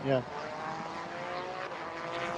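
A race car engine running at steady revs, with its pitch creeping slightly upward.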